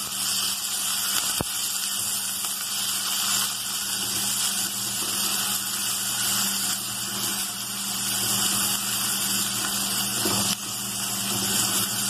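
Chopped onion and garlic sizzling steadily in hot oil in a pot as they brown, stirred with a silicone spatula, with one sharp click about a second and a half in.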